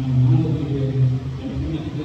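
A man's low, drawn-out voice with no clear words, likely the preacher's, carried by a church sound system.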